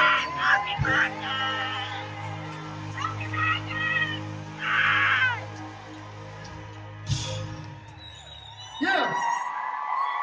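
Live concert band holding sustained keyboard chords while the arena crowd screams and cheers in short bursts.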